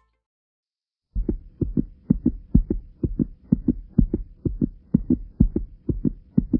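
Heartbeat sound effect: a fast, steady run of deep thumps that begins about a second in and carries on to the end.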